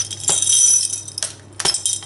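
Loose and strung beads clinking and rattling as they are tipped out of a jar onto a heap of beads in a plastic tub and handled, with a few sharper separate clicks in the second half.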